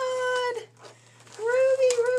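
A woman's high-pitched excited squeals: two long held notes, the first cut off about half a second in, the second starting near the end after a short quiet gap.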